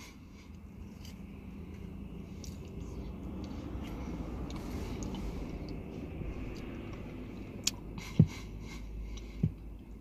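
Low, steady rumble inside a car that swells gently through the middle and eases off, with faint chewing of a spoonful of ice cream and a few small clicks in the last couple of seconds.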